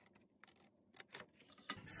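A few faint, sharp snips of scissors cutting cardstock along a score line, about four spread over a second and a half.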